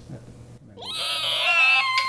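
A young girl's high-pitched squeal of delight, starting about half a second in, rising and held for over a second as it turns to laughter.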